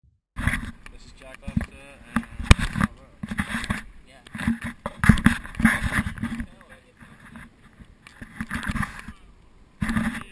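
Sculling boat on choppy water: irregular knocks and splashes from the hull and oars, with indistinct voices of the crew. It starts suddenly just after the start.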